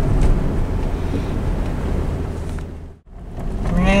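Steady low road and engine rumble heard inside a moving car's cabin. It fades out about three seconds in at an edit, then fades back in.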